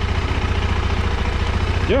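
KTM 390 Adventure's single-cylinder engine idling steadily with an even, rapid beat.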